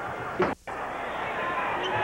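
Basketball arena crowd noise from a televised game, broken about half a second in by a click and a moment of silence where the footage is spliced.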